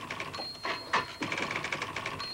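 Typewriter being typed on: a quick, even run of key strikes with a few louder strikes about a second in, and a thin high whine through the first half.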